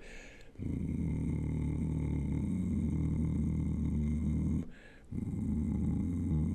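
A male bass singer's attempt at a very low subharmonic note, a steady growling drone held for about four seconds, then a short breath and a second held drone. He judges it only about halfway there.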